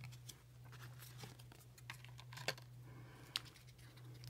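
Faint crinkling and a few light clicks of Pokémon trading cards and foil booster packs being handled, the clearest two ticks near the end.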